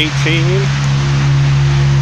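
A steady low mechanical hum of constant pitch, the loudest sound once a single spoken word ends early on.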